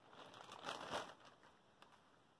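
Faint crinkling of a bag of yarn skeins being handled and rummaged through, strongest about a second in and then dying away.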